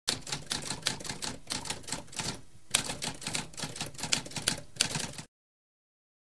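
Typewriter keys clacking in a rapid run of keystrokes, with a brief pause about halfway, stopping about five seconds in.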